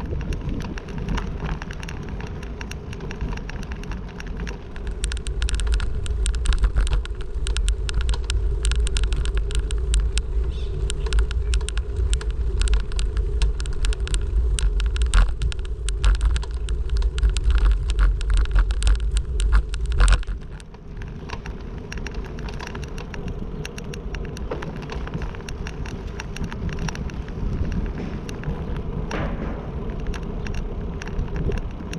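Vehicle ride noise: a steady rumble of the moving vehicle with many small clicks and rattles. It grows heavier and louder about five seconds in, then drops back suddenly about twenty seconds in.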